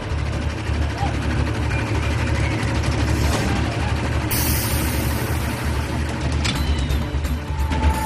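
Launched roller coaster train holding on its launch track, waiting to launch: a steady low rumble, with a sharp hiss of air about four seconds in that fades over a second or so.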